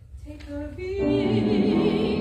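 Classical soprano voice: after a brief lull, she comes in about a second in and holds a sung note with vibrato.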